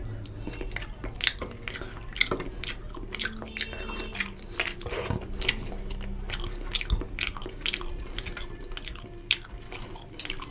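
Close-up wet chewing and lip smacking of rohu fish curry and rice, with many short sharp clicks and smacks, and the soft squish of fingers picking at a fish head in oily curry on a steel plate.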